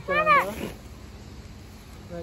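A young child's short, high-pitched whining cry, one arching wail of about half a second that rises and falls.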